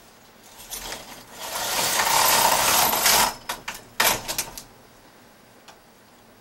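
Knitting machine carriage pushed across the needle bed in one steady swishing pass of about two seconds while knitting a short row, followed by a quick run of sharp clicks.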